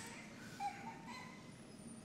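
A pause in speech: faint room tone of the hall, with a faint short rising tone about half a second in.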